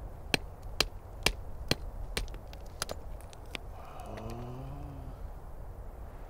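Rock hammer striking basalt at a cliff face, about seven sharp blows roughly two a second, chipping off a piece of rock.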